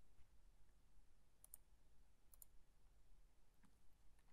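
Near silence: room tone with a few faint clicks, two close pairs about one and a half and two and a half seconds in.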